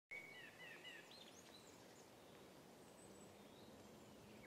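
Faint birdsong: a quick series of short, sliding chirps in the first second and a half, then little more than a quiet background hiss.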